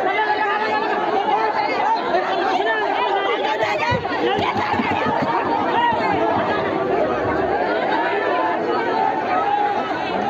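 Crowd of people talking over one another, many voices overlapping continuously with no single voice standing out.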